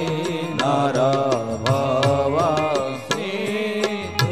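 A man singing a devotional chant-like melody, his voice gliding between notes and holding one long note near the end, over sharp, regularly spaced percussion strikes.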